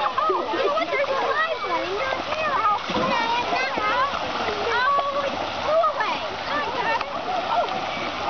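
Many children's voices shouting and chattering at once, overlapping, over the steady splashing of water in a busy wading pool.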